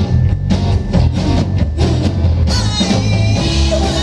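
Live rock band playing loudly: drum kit and bass with electric and acoustic guitars, with singing coming in about two and a half seconds in.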